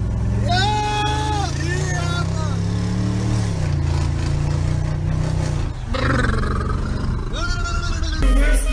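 A car engine pulling hard, its note rising for about three seconds and then dropping away, heard from inside the car with the window down. A man's long drawn-out shout runs over the start, and a shorter call comes near the end.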